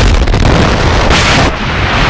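Loud rushing air noise as the tandem skydivers drop out of the plane into freefall, with a brighter whoosh about a second in.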